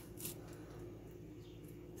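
Quiet pause: faint steady background hum, with one brief soft hiss about a quarter second in.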